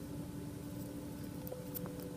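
Quiet room tone with a faint steady hum, and a few faint light ticks in the second half.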